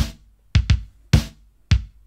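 A programmed drum-machine beat at about 103 BPM, drums only with no bass: a kick with a sharp hit on top about every half second, with one quick doubled hit.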